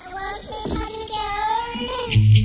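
A high voice singing alone, unaccompanied, its pitch bending and wavering, at the start of a song on a lo-fi home cassette recording.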